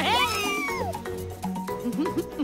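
A cartoon character's high, meow-like vocal call that slides downward in pitch for about a second, over light background music.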